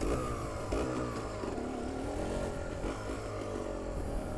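Motorcycle engine running under way as the bike pulls across a junction, its note wavering up and down with the throttle.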